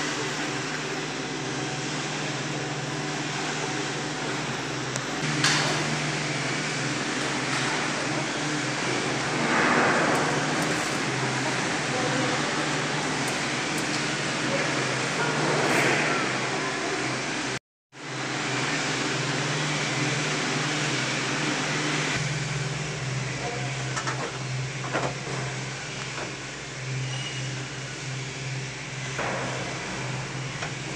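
Girak six-seater detachable gondola lift station running, a steady low mechanical hum with noise of the cabins moving through the station, and people's voices. The sound drops out for a moment about two-thirds of the way through.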